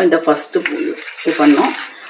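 A voice speaking, with paper being cut in the pauses: a sharp snip about two-thirds of a second in, and brief rasping sounds between the words.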